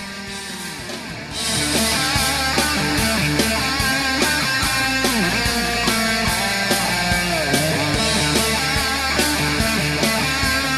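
Rock instrumental led by an electric guitar with bending, sliding lead lines. A full band with a steady drum beat and bass comes in loud about a second and a half in.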